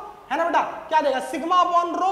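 Only speech: a man lecturing in Hindi.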